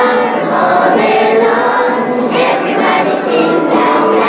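A group of young girls singing together as a children's choir.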